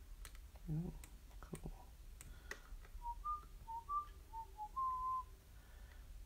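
A person whistling a short tune of about seven notes, the last one held a little longer. A few scattered sharp clicks come before it.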